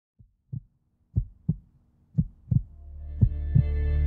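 Heartbeat sound effect: paired lub-dub thumps about once a second, getting louder, with a low musical drone swelling in beneath it from about halfway.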